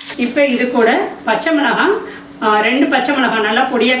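A woman talking over a faint sizzle of vegetables frying in oil in a small steel kadai, with a couple of light clicks.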